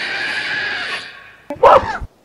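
Kaiju vocal sound effects used as monster dialogue: a long screeching call that fades out about a second in, then a shorter, louder call with wavering pitch near the end.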